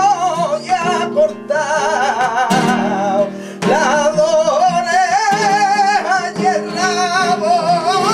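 A man sings a flamenco fandango in a heavily ornamented, wavering line over acoustic guitar accompaniment. The voice breaks off briefly twice in the first half.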